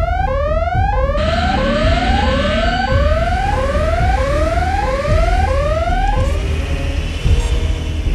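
Electronic red-alert alarm sound effect: a whooping tone that rises in pitch, repeated about three times every two seconds over a low rumble, stopping about six seconds in.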